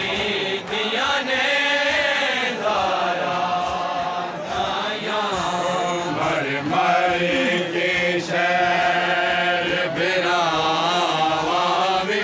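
A party of men's voices chanting a Punjabi noha, a Shia mourning lament, with no instruments, in long held notes that waver and bend.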